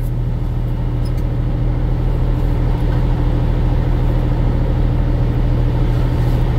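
Truck engine idling steadily, a constant low rumble heard from inside the cab.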